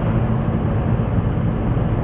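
Steady low rumble of a car driving along a road, engine and tyre noise heard from inside the cabin.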